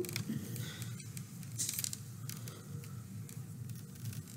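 Faint rustling and scraping of thread being drawn through a dream catcher's woven web by hand, with a brief hissy pull about one and a half seconds in. A low steady hum runs underneath.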